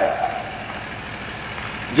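A pause in a man's amplified talk: a steady background noise with no clear pitch, heard through the microphone, with his last word echoing away at the start.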